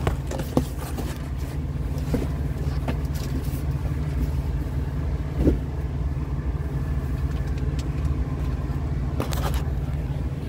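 Steady low hum of a vehicle engine idling, heard from inside the cabin, with a few light knocks and clicks scattered through it.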